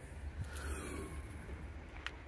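Faint outdoor background: a low, steady rumble under a light hiss, with one faint tick about half a second in.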